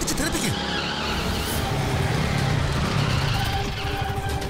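A motor vehicle running on the road, a steady low rumble, with a brief voice exclamation right at the start.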